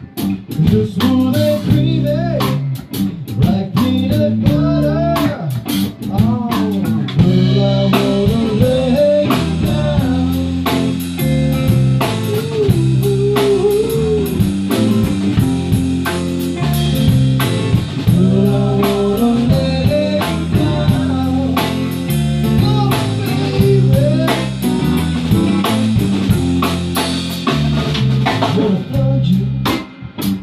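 Guitar music in an instrumental passage with a blues feel: a steady strummed rhythm and a lead melody of bending, gliding notes over a regular beat.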